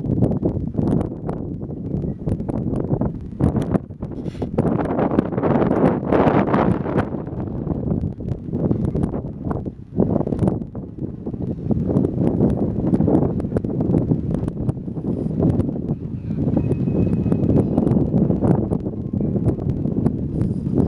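Wind buffeting the microphone: a low, uneven rush that swells and drops in gusts, with a brief lull about halfway through.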